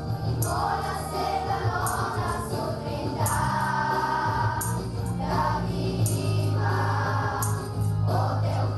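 Children's choir singing a Christmas song over an instrumental backing track, with a steady bass line and a crisp high percussion hit about once a second.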